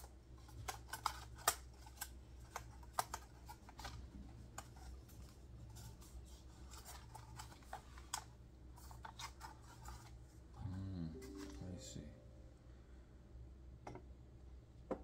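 Plastic clicks and taps of a DJI Mavic 3 drone being handled on a desk as its folding arms are swung open. A short voiced hum is heard about eleven seconds in.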